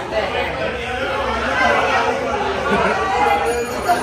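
Indistinct chatter: several voices talking at once, with no clear words.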